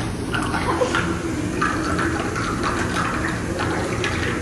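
Water churning and bubbling steadily in a tub around a person's submerged legs.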